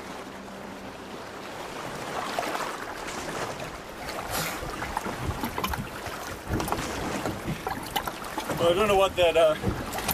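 Steady wind and water noise, with a few sharp knocks scattered through. A man's voice starts near the end.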